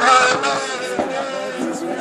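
A race car's engine, pitched and revving, fading as it drives on after passing close by.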